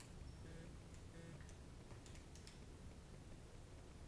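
Faint clicks of handheld calculator keys being pressed, a handful of them between about one and two and a half seconds in, over a low steady room hum.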